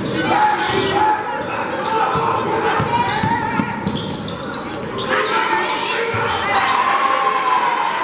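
A basketball bouncing on a hardwood gym floor during play, in repeated sharp thuds. Voices carry through the large gym, with occasional sneaker squeaks.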